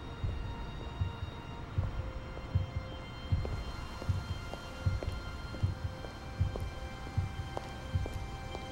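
Film soundtrack: moody music score of held tones over a steady, slow thudding pulse, about one beat every 0.7 seconds.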